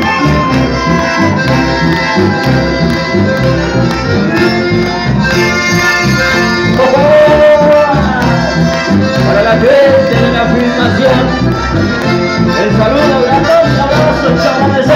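Live band music led by accordions, a button accordion and a bandoneon, over electric bass and guitars with a steady beat, played loud.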